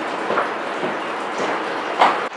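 Steady room hiss with a few faint, soft footsteps about half a second apart.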